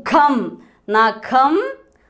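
Only speech: a woman's voice speaking in short syllables, reading out words.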